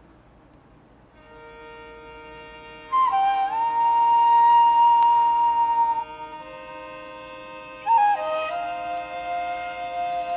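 Instrumental introduction of a song's backing track: sustained chords enter about a second in, then a melody of long held notes comes in twice, each phrase opening with a short slide between pitches.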